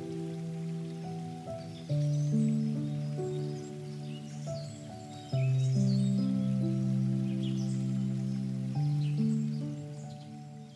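Background music of soft, sustained chords that change every few seconds, with short chirping sounds high above them.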